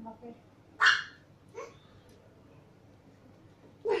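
A Siberian husky gives one sharp bark about a second in, followed by a second, softer and shorter one.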